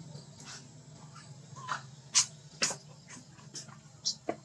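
Macaque monkeys giving a series of short, sharp high-pitched squeaks and chirps. The two loudest come about half a second apart, a little past two seconds in.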